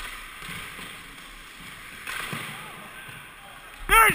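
Ice hockey skate blades gliding and scraping on the ice, a steady hiss that thickens briefly about two seconds in, with faint distant voices. A loud shout begins right at the end.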